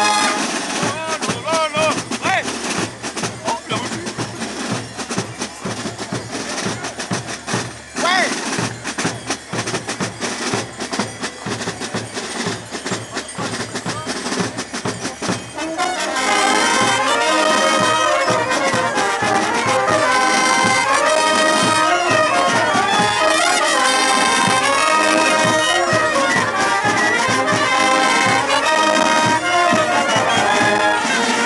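Carnival brass band of trumpets, trombones, baritone horns and sousaphone playing a rondeau tune over drum beats. The first half is choppier and quieter; about halfway the full brass section comes in loud with long held notes.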